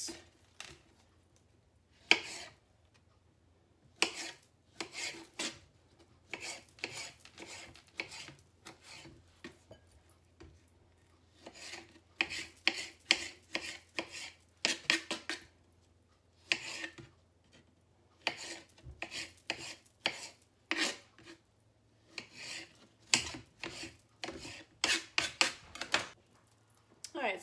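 Kitchen knife slicing and chopping a tomato on a cutting board: runs of quick cuts broken by short pauses.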